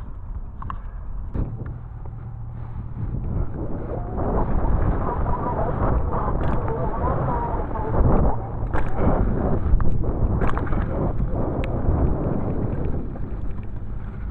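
Wind buffeting a helmet-mounted camera's microphone while a United Recruit BMX bike rolls over a dirt track. The rumble grows louder from about four seconds in, with a few sharp knocks from the bike.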